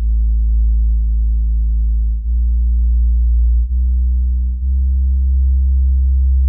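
Low sub-bass synthesizer notes made on analog synths, played back one after another. There are four loud, steady low tones, each in a different key, and the note changes abruptly three times.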